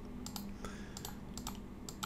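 Faint, irregular clicking of a computer mouse and keyboard, several clicks over two seconds.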